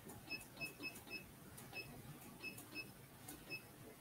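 Several short, faint, high electronic beeps at uneven spacing, like keypad button presses on a heat press's digital control panel as its press time is set.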